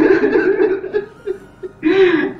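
A man sobbing into a close microphone in choked, broken catches of voice and breath. It is loud for the first second, dies down to small catches, then breaks out again near the end.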